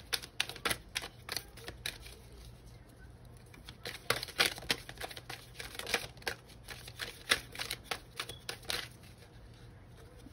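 Oracle card deck being shuffled by hand off camera: irregular flurries of sharp card clicks and snaps, with the busiest bursts near the start and about four seconds in.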